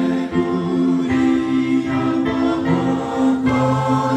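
Large congregation singing a hymn together, many men's and women's voices holding long notes.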